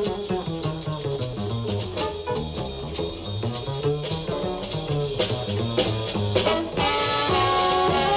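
Jazz performance: an upright double bass plays a quick line of plucked notes. Near the end a saxophone comes in with longer held notes and the band grows louder.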